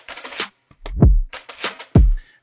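Trap-style drum beat playing back: deep kicks with a falling pitch about a second in and again near the end, between short, noisy snare-like hits.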